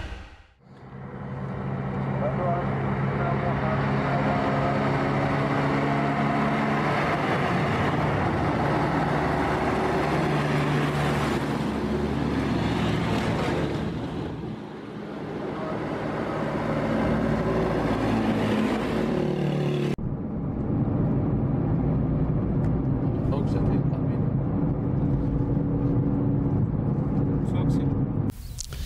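A motor vehicle's engine running steadily with road noise. The sound changes abruptly about two-thirds of the way through, then carries on much the same.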